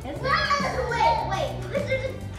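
Children's high voices and squeals over background music with a steady, stepping bass line.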